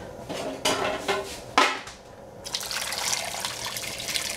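A few knocks in the first half, the loudest about one and a half seconds in. Then, from about halfway through, water pours in a steady stream into a stainless steel pot of chicken wings, filling it.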